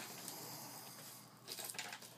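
Quiet room noise, with a few faint short sounds near the end.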